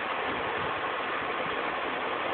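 Steady hiss of background noise at an even level, with no distinct sound standing out.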